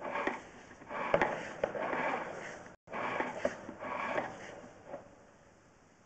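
Drain inspection camera's push rod being fed along a PVC drain pipe, scraping and rattling in uneven bursts with a couple of sharp clicks.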